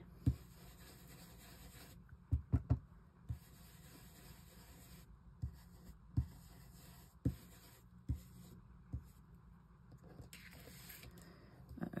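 Blending brush swirling ink onto card through a paper stencil: faint soft brushing, with scattered light taps as the brush is dabbed down.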